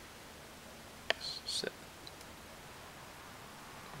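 Two faint metallic clicks about half a second apart as the connecting rod of a Kawasaki KX125 two-stroke is rocked forward and back on its crank pin, with a short hiss between them. The clicks are the free play of a worn lower rod bearing.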